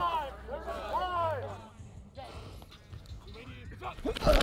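Men's voices shouting and calling out across a football practice field in the first second and a half, not clear enough to make out words. After that it goes quieter, leaving low rumble on a body-worn mic.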